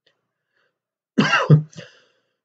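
A man briefly clears his throat with a short cough-like sound about a second in, after a moment of silence.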